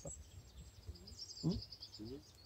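Wind rumbling on the microphone, with a bird singing a quick run of short high notes in the background during the second half.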